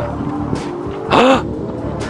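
A short vocal exclamation about a second in, over faint background music and a steady low rumble.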